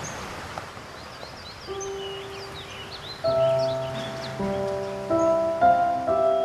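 Soft background score enters about two seconds in: single held notes that build into louder sustained chords. Light bird chirping runs over the outdoor ambience in the first half.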